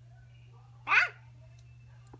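A single short, high-pitched vocal squeal about halfway through, rising then falling in pitch, over a low steady hum.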